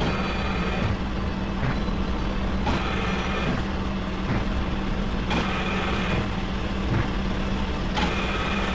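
Dense industrial noise music: a steady low hum under a thick grinding, rumbling noise that resembles a large engine, the texture shifting abruptly twice, a little under three seconds apart.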